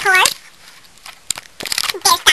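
A high-pitched voice vocalizing without clear words, cut off about a third of a second in. It is followed by quiet with a few light clicks and taps near the end.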